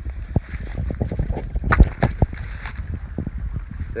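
Footsteps and rustling through dry grass and brush on a creek bank, with wind buffeting the microphone and handling knocks: a string of irregular knocks and rustles over a rough low rumble, the loudest knock about two seconds in.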